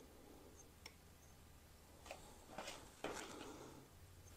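Near silence broken by a few faint clicks of small gun parts being handled and fitted against an AR-15 lower receiver: one about a second in, a couple more later, and a short cluster near the end.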